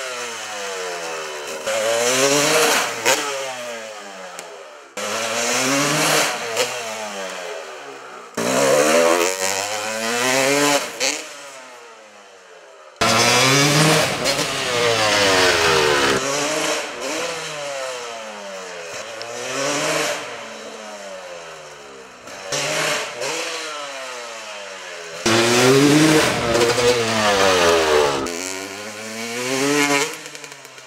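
Yamaha YZ250 two-stroke single-cylinder dirt bike engine revving hard over and over, its pitch climbing and then dropping again and again. It changes suddenly several times, at about 5, 8, 13 and 25 seconds in, where one pass cuts to the next.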